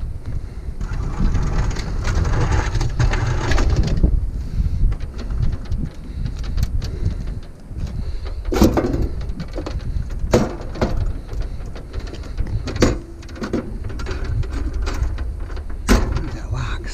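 Heavy old Coca-Cola vending machine being handled by hand: a stretch of scraping about a second in, then several sharp metal clunks further on, over a steady low rumble.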